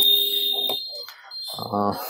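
A steady, high-pitched electronic beep that cuts off under a second in. A man's short 'uh' follows near the end.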